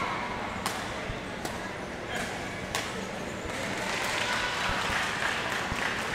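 Badminton rackets striking a shuttlecock in a doubles rally: four sharp hits in the first three seconds, with spectators' voices chattering behind, growing louder in the second half.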